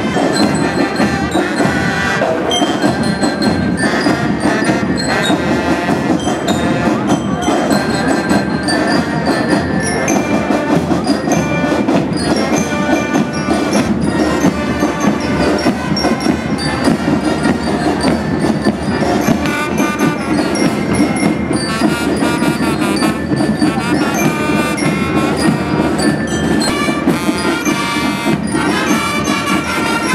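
Band music playing steadily, with brass, percussion and high bell-like tones.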